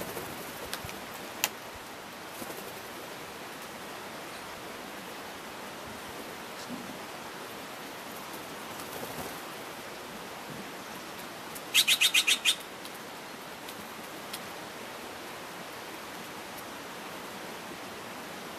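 A Steller's jay gives one quick series of about six harsh calls near two-thirds of the way through, the loudest thing here, over a steady background hiss. A sharp click comes about a second and a half in.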